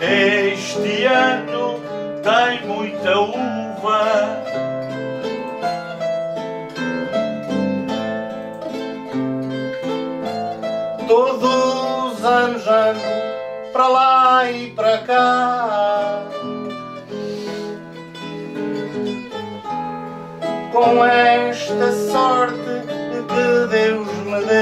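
Instrumental interlude of an Azorean cantoria ao desafio: a Portuguese guitar plays plucked melodic runs over an acoustic guitar's accompaniment, between the sung improvised verses. Flurries of fast notes come up about halfway through and again near the end.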